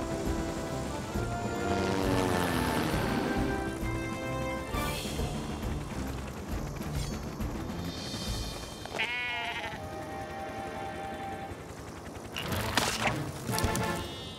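Cartoon background music, with a lamb bleating in a wavering voice about nine seconds in. A couple of loud rushing bursts come near the end.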